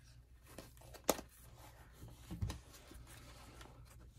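Quiet handling of a fabric-and-paper journal, with one sharp click about a second in as a metal binder clip is worked onto the pages, and a soft rustle a little past two seconds.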